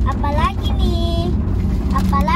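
Steady low rumble of a car's interior while driving, with a young girl's high voice over it twice.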